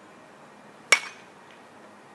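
A baseball bat hitting a pitched ball once in batting practice, about a second in: a single sharp crack with a brief metallic ring.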